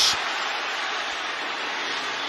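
Steady stadium crowd noise from a football game, with no single cheer standing out.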